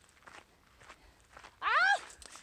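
Faint, irregular footsteps on a gravel road, then near the end a woman's loud, short yelp that rises and falls in pitch, startled by a throw of snow that nearly hits her.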